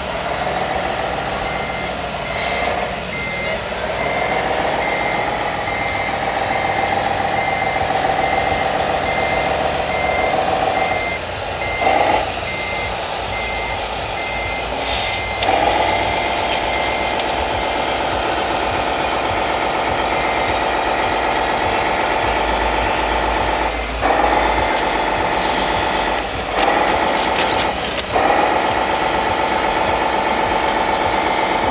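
RC hooklift truck's hydraulic pump running in a steady whine as the hook arm lifts a roll-off container, cutting out and starting up again several times. A warning beeper sounds in regular beeps throughout.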